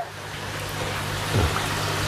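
Steady hiss-like background noise over a low steady hum, with a short falling tone about a second and a half in.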